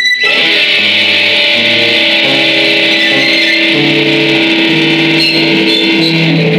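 Live rock band playing loudly: electric guitars over low notes that step in pitch from one to the next.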